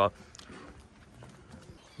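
Faint, soft hoofbeats of a foal walking on a packed dirt lane as it is led, a few separate steps.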